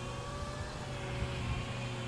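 Steady engine hum with a few faint tones that drift slowly in pitch.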